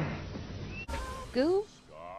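Dubbed cartoon soundtrack that cuts abruptly just under a second in, followed by a short, loud vocal cry from a character that rises in pitch.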